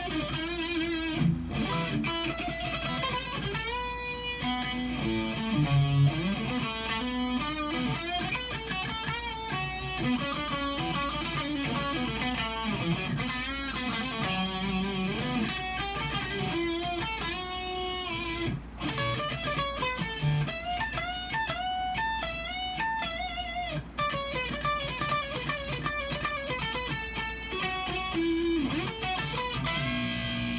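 Homemade plywood electric guitar with a passive pickup, played through an amplifier: picked single-note lead lines with bent and wavering notes, in a warm tone.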